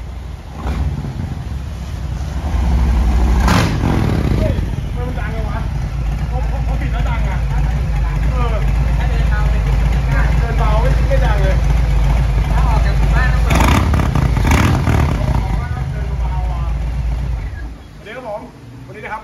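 2021 Harley-Davidson Low Rider S, its Milwaukee-Eight 114 V-twin running at idle through a full S&S race-only exhaust, blipped loud about three and a half seconds in and twice in quick succession near the end. The engine then falls quiet just before the end.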